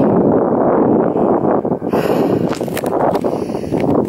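Wind buffeting the camera's microphone: a loud, steady rush of noise with a few brief crackles in the second half.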